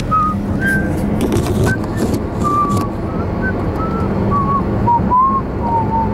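Car interior road and engine noise while driving: a steady low hum and rumble. A string of short, high single-pitched notes comes and goes over it.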